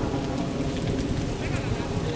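Wind buffeting the camera's microphone, a steady low rumbling noise with faint voices in the background.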